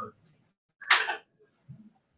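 A man's short stifled sneeze, a single breathy burst about a second in, picked up by his handheld microphone, followed near the end by a faint, brief low sound from his voice.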